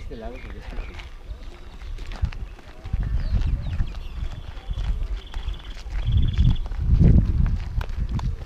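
Wind and handling rumble on the microphone of a camera carried while walking over dry dirt, rising and falling and strongest near the end, with faint voices in the background. Three short high trilled notes sound one after another in the middle.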